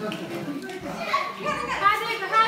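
Young children playing and chattering, their high voices rising and falling, with a brief louder cry just before the end.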